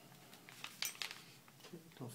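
Several small sharp clicks and taps as an iPod Touch's LCD panel and opened housing are handled and set down, the loudest about a second in.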